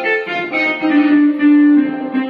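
Casio electronic keyboard playing a melody in raga Abhogi, a line of sustained notes with one longer held note about a second in.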